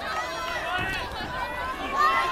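Crowd of spectators shouting and yelling at the boxers, many voices overlapping with no clear words.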